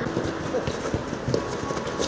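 Football players' footsteps running on artificial turf and the ball being played, a scatter of light irregular thuds in a large covered hall.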